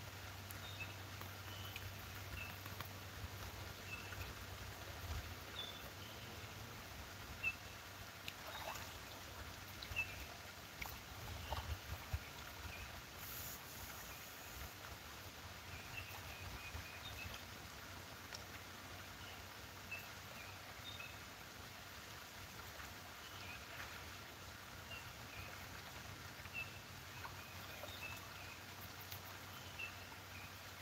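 Songbirds chirping in short, scattered high calls over faint outdoor background noise, with a few soft knocks and scrapes near the middle.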